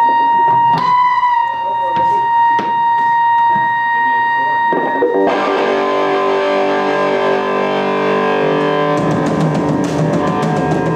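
A steady high-pitched whine of electric guitar amplifier feedback, then about five seconds in a distorted electric guitar chord is struck and left ringing; drums come in near the end.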